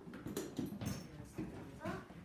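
Classroom background sound: faint voices mixed with a few light knocks and rustles.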